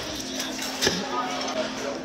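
A man blowing through a cooked crab leg section to push the meat out of the shell: one short sharp pop a little under a second in, over a steady low hum and dining-room background.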